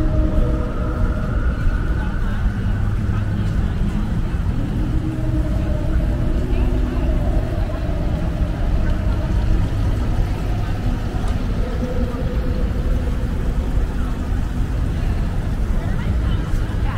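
City street ambience: a steady low rumble of traffic with indistinct voices of people nearby.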